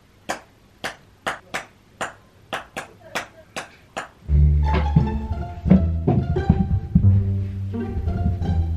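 Background music: a run of short plucked pizzicato string notes, joined about four seconds in by a louder, fuller backing with a strong bass.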